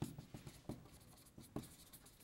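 Chalk writing on a blackboard: a handful of faint, short chalk strokes and taps.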